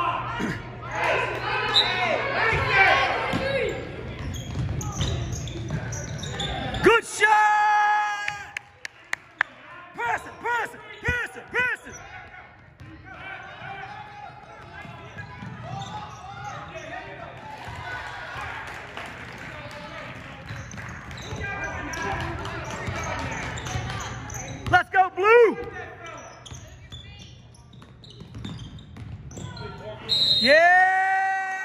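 Basketball being played on a hardwood gym floor: sneakers squeaking in short, sharp bursts, the ball bouncing, and voices echoing around a large hall. The loudest squeaks come about seven seconds in and again near twenty-five seconds.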